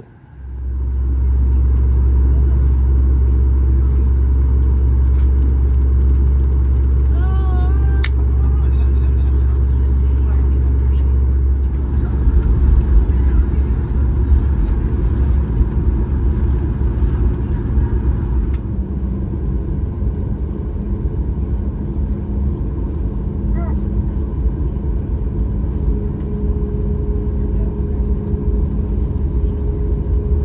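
Boeing 737 MAX 8 cabin noise: a loud, steady low rumble that turns rougher and more uneven about twelve seconds in, as the CFM LEAP-1B engines carry the jet along the taxiway, with steady hum tones from the engines joining later.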